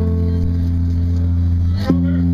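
Live band music: sustained chords over a steady low bass note, with a new chord struck near the end.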